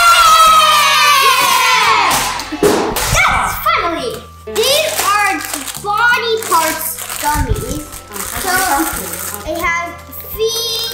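A child's long, loud, excited shriek, falling slightly in pitch, lasts for the first two seconds or so. Short excited children's exclamations follow, with the crinkle of a plastic candy bag being handled, over background music.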